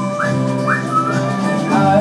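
Live band music with acoustic guitar and drums, over which a high, thin melodic line slides up in three short swoops and then holds a note.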